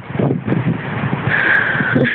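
Wind buffeting a phone microphone with surf breaking on a beach, a loud gusty noise. A high steady tone comes in over it for the last half second.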